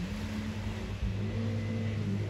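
Jet ski engines running out on the water, a steady hum that shifts slightly in pitch.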